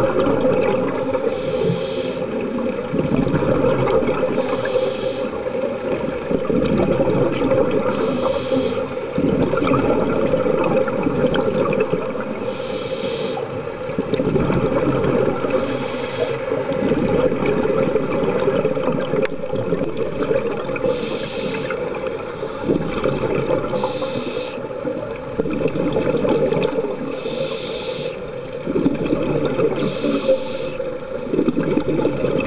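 Scuba regulator breathing recorded underwater: exhaled air bubbling out in gurgling bursts about every three to four seconds, over a steady underwater hiss and rumble.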